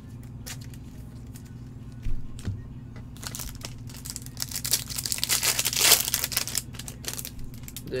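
Foil trading-card pack wrapper being torn open and crinkled by gloved hands: a crackly tearing and crinkling that starts a few seconds in, grows loudest near the end, then tails off, over a steady low hum.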